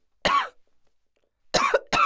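A person coughing: one sharp cough about a quarter second in, then two more in quick succession near the end.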